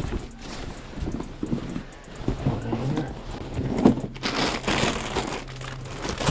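Rustling and handling of a black fabric delivery bag with scattered knocks and footsteps on brick pavers as groceries are set down; the loudest rustle comes about four seconds in.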